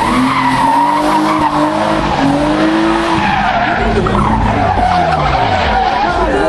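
Drift car sliding sideways, its tyres squealing and its engine revving high. The engine note climbs through the first half, then falls away near the end, while the squeal carries on.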